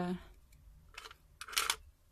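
A brief rustle of handling noise about a second and a half in, with a faint tick just before it, as a cup packed with wooden clothespins is turned in the hand.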